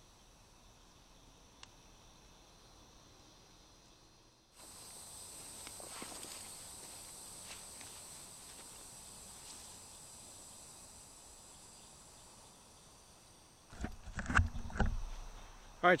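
Faint evening insect chorus, a steady high-pitched trill that comes in suddenly about four and a half seconds in. Near the end there is rustling, knocking and bumping as the camera is picked up and handled.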